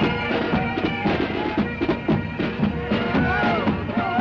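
Pipe band playing: bagpipes sounding over their steady drones, with a regular drum beat. Voices shout over the music near the end.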